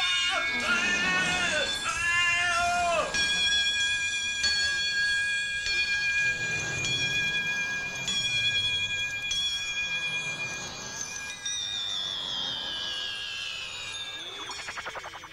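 Experimental music: swooping, gliding pitched tones for the first few seconds, then several steady high tones held together, and a long falling glide near the end.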